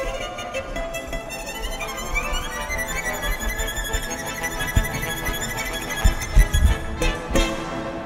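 Solo violin playing with a military brass band, the violin rising in a quick run about two seconds in. Loud low beats come in around five to seven seconds as the piece closes, and the music stops shortly before the end.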